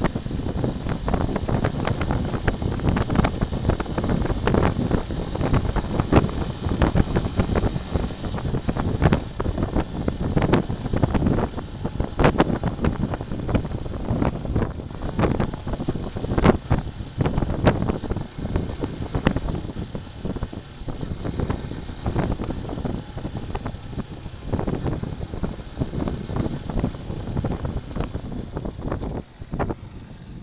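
Wind buffeting the microphone of a camera on a moving motorcycle at about 40 km/h, with irregular thumps over the engine and road noise. It eases slightly near the end as the bike slows.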